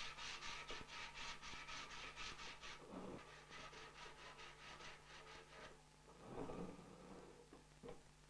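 Faint sandpaper strokes rubbed quickly back and forth over a wooden spindle-back chair, about five or six strokes a second, stopping a little past halfway: the final hand sanding of the finished chair. A low steady hum runs underneath.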